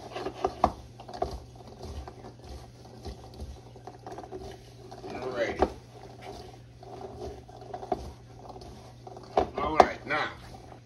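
Fresh cranberries being tossed by hand in flour in a mixing bowl: irregular soft knocks and rustles, loudest in the first second, over a steady low hum. A short voice sound comes about midway and again near the end.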